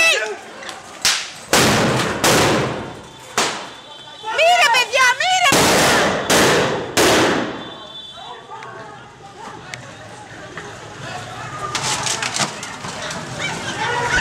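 Police grenades going off in a street during a riot-police charge: a series of loud bangs, the first about a second and a half in and a cluster of three close together near the middle, with people shouting between them. The street fills with smoke as they go off.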